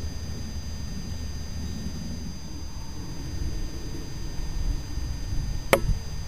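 Low rumbling background noise that swells in the second half, with one sharp click near the end.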